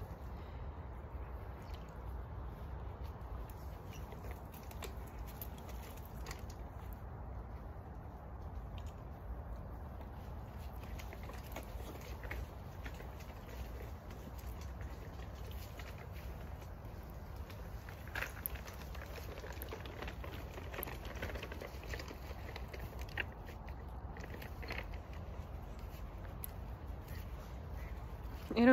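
Soft, irregular footsteps of barefoot sheepskin boots on a forest dirt path, with faint rustling and a steady low rumble on the phone's microphone.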